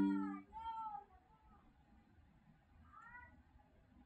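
The fading end of a low ringing note, with a cat meowing: two short calls that rise and fall in pitch in the first second, and one more about three seconds in.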